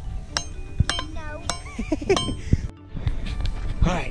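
Small rock hammer striking rock about four times in the first two and a half seconds, each blow a sharp metallic clink with a brief ring.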